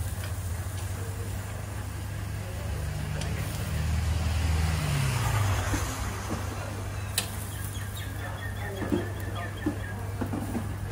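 Low steady hum with a motor vehicle passing in the middle, its engine note swelling and then falling in pitch as it goes by. A few light clicks come near the end.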